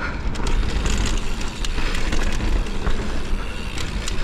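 Mountain bike descending a dry dirt trail: tyres rolling over dirt with the bike's chain and frame rattling, and wind rumbling on the rider-mounted microphone.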